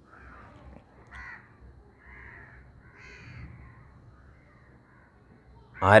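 Crows cawing in the background, several separate caws spread through the pause.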